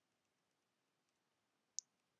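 Near silence: room tone, with one brief sharp click near the end.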